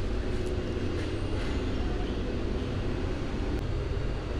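Steady low-pitched background drone with no distinct events.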